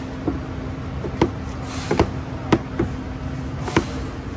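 Plastic air intake duct being pressed down and seated over a Kia Sportage's battery, making about six sharp plastic clicks and knocks at uneven intervals over a steady low hum.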